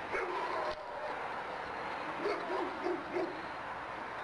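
Dogs barking: a drawn-out yelp at the start, then a quick run of about five short barks a couple of seconds in.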